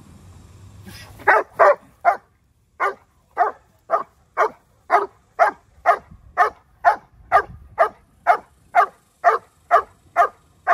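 A one-year-old sable German shepherd barking on leash: a steady run of loud, evenly spaced barks, about two a second, starting about a second in after a quick first pair.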